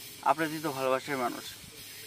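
A man laughing briefly, a few short voiced bursts in the first second or so, over a steady hiss.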